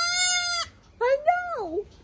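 Newborn goat kid bleating close up: one loud, steady bleat that breaks off about half a second in, then a shorter call that rises and falls in pitch.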